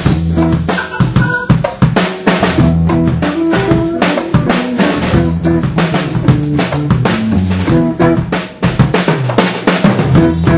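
Funk band playing a groove at full volume, the drum kit to the fore with close, even snare and kick hits over a moving bass line.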